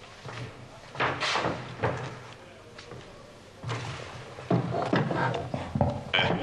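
Knocks and thumps of a microphone stand being carried over and set down, a few short sudden bumps followed by more handling noise.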